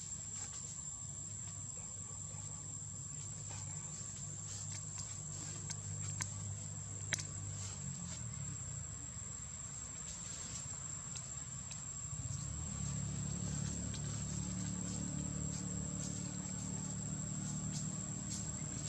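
Steady high-pitched insect trill, with a low rumble underneath that grows louder about twelve seconds in, and a sharp click about seven seconds in.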